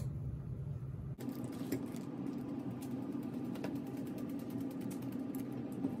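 Fine wire-mesh sieve shaken and tapped over a bowl to sift flour: a rapid, even rattle of light ticks.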